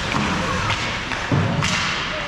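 Indoor ice hockey game sounds: a dull thud about a second and a quarter in, followed a moment later by a single sharp crack, over steady rink noise and faint voices.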